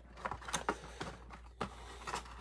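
Light handling noise of cardboard and trading cards: a few soft clicks and faint rustles as a stack of football cards is slid out of its cardboard box sleeve.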